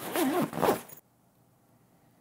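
Zipper on a padded Nanlite light-tube carry bag being pulled open for about a second, then the sound cuts off to dead silence.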